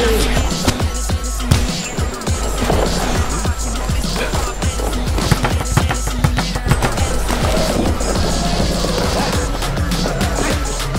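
Promo soundtrack: music with a deep, heavy bass and a beat, with many sharp punch and kick impact sound effects on pads layered over it.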